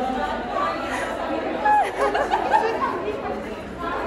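Chatter of many people talking over one another in a room, with no single voice standing out.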